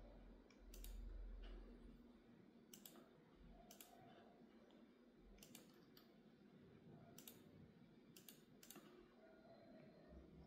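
Near silence, broken by about ten faint, sharp clicks at irregular intervals, and a brief low rumble about a second in.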